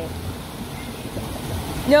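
Shallow artificial stream running through a concrete channel: a steady rush of flowing water.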